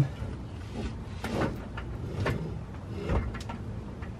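A few scattered sharp knocks and scrapes, with a heavier low thump about three seconds in, as a Tremec TKX manual transmission is worked back off the bell housing from under the car.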